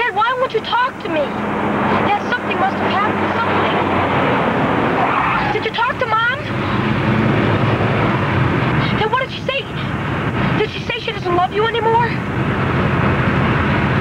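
A moving car's steady engine and road noise, with voices talking over it in short stretches.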